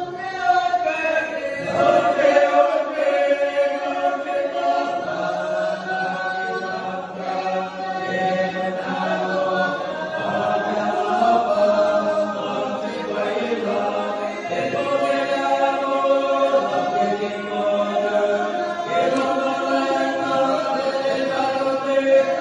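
Men's choir singing unaccompanied, holding long chords that change every few seconds over a low bass line.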